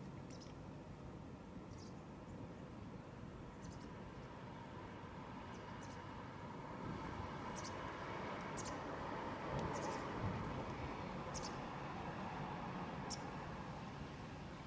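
A small bird chirping, short high notes repeated every second or two, over a faint steady background rush that swells in the middle and then eases.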